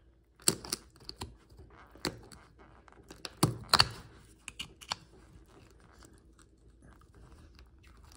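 Steel Toadfish oyster knife clicking and scraping against a rough oyster shell as its tip is wedged into the hinge and twisted to pry the shell open, with small crunches of shell. The sharp clicks come irregularly, the loudest about half a second in and again between three and four seconds in.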